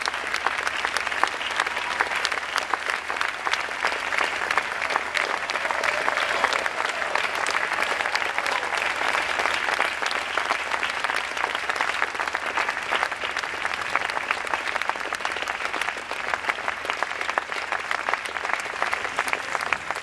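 Audience applauding: many hands clapping at a steady level throughout.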